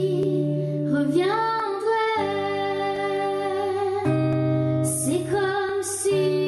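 A boy singing a French ballad, holding long notes and sliding up in pitch about a second in and again near the end, over sustained electric-guitar accompaniment.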